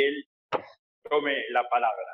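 Speech from the video call, broken by a single short pop about half a second in.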